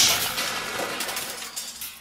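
The tail of a cartoon crash sound effect dying away: a big wooden grandfather clock has just toppled and smashed, followed by a few small clinks of debris settling.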